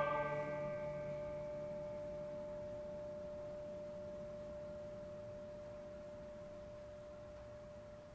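A struck metal percussion instrument ringing on after the ensemble's last chord: one steady bell-like tone that fades slowly over the whole stretch. Its higher overtones die away within the first couple of seconds.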